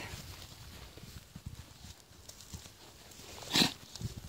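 Miniature donkeys jostling close around: faint scattered hoof steps and rustling on dry ground, with one short, sharp burst of noise about three and a half seconds in.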